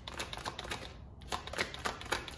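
Tarot cards being shuffled by hand: a run of light, irregular card clicks.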